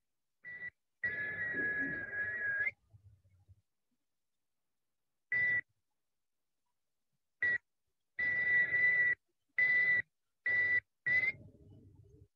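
A man whistling a steady high note into a telephone in a series of short and long blasts, about eight in all, the longest about a second and a half, with breath noise under each.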